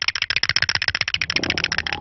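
Cartoon sound effect of chattering teeth clacking: a fast, even run of clicks. A low hum comes in during the second half.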